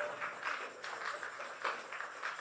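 Faint, soft rhythmic taps, about three a second, in a quiet hall.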